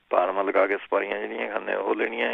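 Speech only: a person talking steadily in Punjabi, with one brief break just before the end.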